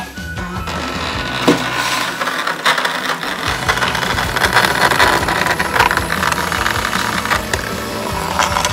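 Battery-powered toy hamster's small motor whirring as it runs through a plastic playset, with steady rattling and clicking against the plastic track, fuller from about three seconds in.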